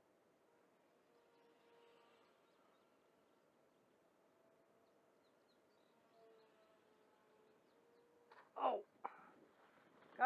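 Faint, distant whine of a small radio-controlled biplane's motor, its pitch drifting slightly up and down with throttle. Near the end, a man's two short loud exclamations as the wind gets the better of the plane.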